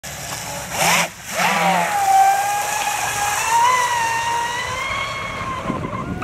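Battery-powered RC mono-hull speedboat running fast: a high electric motor whine that rises in pitch, drops out briefly about a second in, then comes back and holds, with the hiss of water spray. The whine weakens near the end as the boat moves away.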